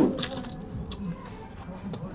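Crisp papadam (thin fried chickpea-flour wafer) crunching as it is bitten, a sharp crackle at the start, followed by a few fainter crunches of chewing.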